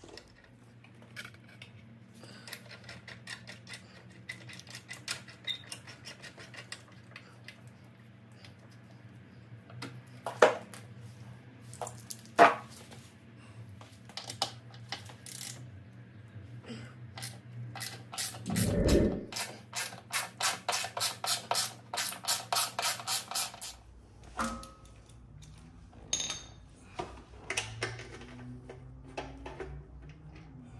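Hand tools working on a motorcycle's docking hardware: metallic clicks and clinks, two sharp metal knocks near the middle, then a run of regular ratchet strokes at about three a second as a docking-point fastener is tightened.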